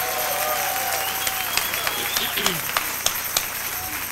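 An audience applauding, with scattered voices calling out among the claps, dying down near the end.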